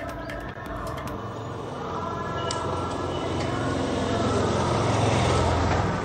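Street traffic noise with a motor vehicle's engine hum, growing steadily louder.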